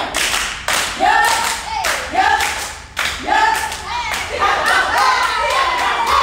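A group of dancers clapping and stamping on a hard floor in a steady rhythm, with short shouted calls from voices between the strikes.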